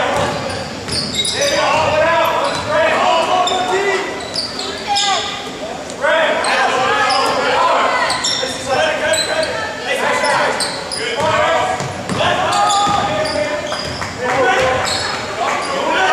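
Basketball dribbled on a hardwood gym floor, the bounces echoing in a large gymnasium, under steady chatter of spectators.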